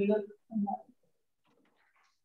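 A brief, indistinct spoken utterance: two short stretches of a person's voice in the first second, then only faint sounds.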